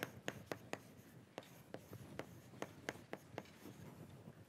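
Chalk writing on a blackboard: a faint, irregular run of short taps and scratches as an equation is written out.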